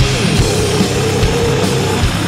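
Loud crust-style metal music: heavily distorted guitars and bass over pounding drums. A long sustained note rises out of the mix about half a second in.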